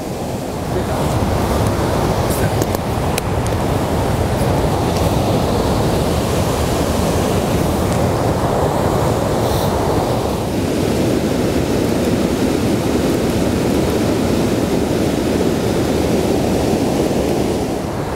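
Rushing whitewater creek: a steady, even noise of fast-flowing water, a little less hissy after about ten seconds.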